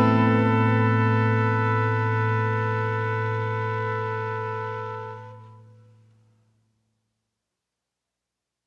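The song's final chord held and slowly dying away, fading out about five to six seconds in, then silence at the end of the track.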